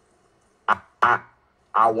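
Only speech: a man's hesitant "I... I," with near-silent pauses before and between the words, then he goes on talking near the end.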